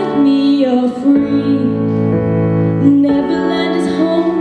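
A girl singing live into a handheld microphone over an instrumental backing track, holding long notes.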